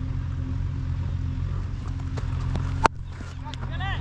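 A single sharp crack about three seconds in, a leather cricket ball struck by the bat, over a steady low rumble, with shouting starting just before the end.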